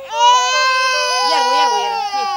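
A baby's crying: one long, loud wail that starts just after the opening and is held, sinking slightly in pitch, for nearly two seconds.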